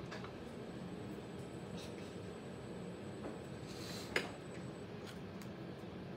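Potter's wheel running with a steady hum while a ribbon trimming tool scrapes leather-hard clay from the base of a bowl, with a few faint clicks and one sharper tick about four seconds in.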